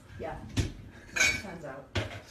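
A few short clinks and rattles from a baby jumper's plastic tray, frame and hanging toys as a pug standing in it moves, with faint voices underneath.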